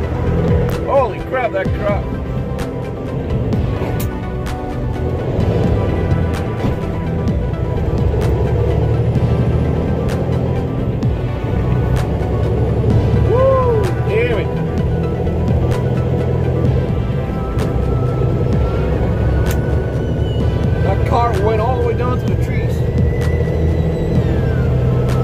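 Music with a voice gliding up and down in pitch a few times, over the steady low road and engine rumble of a car driving.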